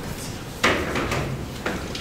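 Two sharp knocks from objects handled on a conference table, about a second apart. The first is the loudest and rings briefly in the hall.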